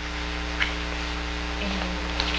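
Steady electrical mains hum, with a faint single click about half a second in.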